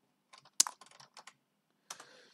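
Computer keyboard being typed on: a quick run of key clicks, one louder than the rest, then a single keystroke near the end.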